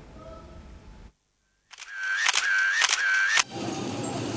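Camera shutter firing three times in quick succession, each pair of clicks joined by a short whine like a motor-driven film wind, after a brief moment of silence.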